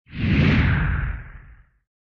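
Whoosh sound effect with a deep rumble beneath it for an animated logo reveal. It swells in quickly, peaks about half a second in, and fades out over the next second.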